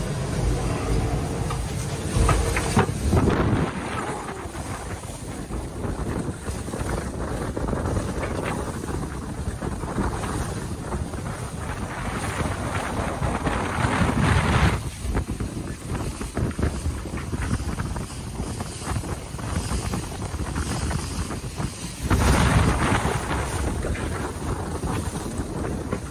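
Wind buffeting the microphone over the rush of water along the hull of a racing yacht sailing through waves. The noise is steady, with a few louder surges lasting a couple of seconds each, the last running through the final few seconds.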